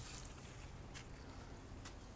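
Faint, steady background hiss of open-air room tone, with a couple of soft ticks, one about a second in and one near the end.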